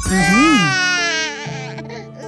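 A cartoon child character crying: one long, high wail that fades about a second in, over light background music.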